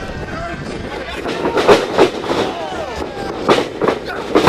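Spectators shouting around a pro wrestling ring, broken by sharp impacts from the wrestlers' bodies in the ring, twice a little under two seconds in and twice again shortly before the end.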